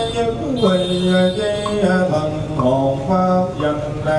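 Buddhist monk chanting a sutra into a microphone: one male voice in slow, drawn-out notes, each held on a steady pitch before stepping or sliding to the next.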